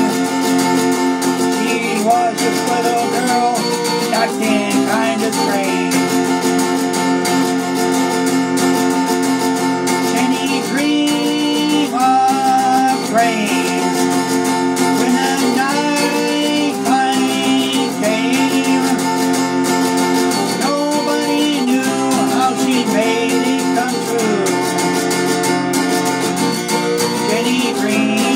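Acoustic guitar played steadily through an instrumental break between sung verses, with a melody line above it that slides and wavers between notes several times.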